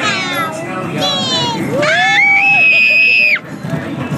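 A toddler giggling in short falling bursts, then a rising, high-pitched squeal held for about a second that cuts off suddenly, with music faintly underneath.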